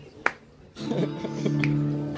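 A sharp click, then just under a second in a steady held chord from the band's amplified instruments starts and sustains.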